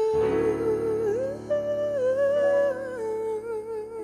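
Female vocalist singing long, drawn-out notes with vibrato, rising a step and falling back, over sustained chords on a Kurzweil electric keyboard.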